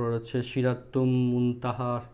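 Only speech: a man's voice talking in a drawn-out, sing-song way, with one long held stretch about a second in.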